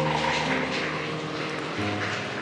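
Soft background music, held chords changing every half second or so, over a steady hiss.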